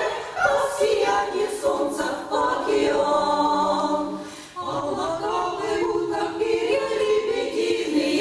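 Women's vocal ensemble singing a cappella in close harmony, holding long notes. There is a brief break between phrases about four and a half seconds in.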